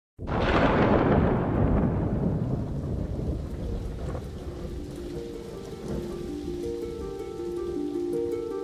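Thunder rumbling over steady heavy rain. It starts suddenly, is loudest in the first second or two and slowly fades, as soft sustained music notes come in about five seconds in.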